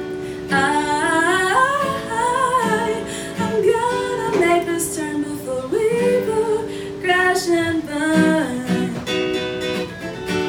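A woman singing with long held, sliding notes over her own strummed acoustic guitar, in a live solo performance.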